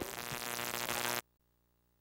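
Edited-in electronic musical sting with several held tones, growing louder, then cutting off abruptly just over a second in, followed by near silence.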